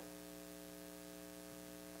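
Faint, steady electrical hum with light hiss: mains hum picked up in the audio chain, heard as room tone with no other sound.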